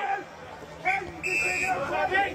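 Voices talking, quieter for a moment about half a second in, with a short high steady tone about a second and a quarter in.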